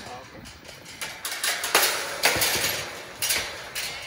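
A tubular steel farm gate being swung open, with uneven rattling and clattering that is loudest in the middle.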